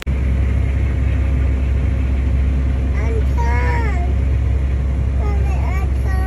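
Tractor engine heard from inside the cab, a loud, steady low rumble.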